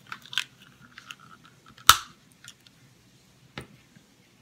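Clear plastic waterproof action-camera housing being handled and shut around the camera: scattered small plastic clicks and rubbing, with one loud sharp snap about two seconds in as the housing's back door is clamped closed.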